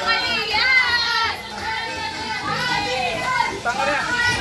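Many young voices talking and calling out over one another at once: lively, high-pitched group chatter of a room full of students.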